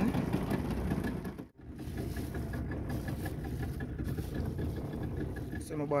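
Small fishing boat's outboard motor idling, a steady low drone with a light regular ticking about four times a second. The sound drops out briefly about a second and a half in, then resumes.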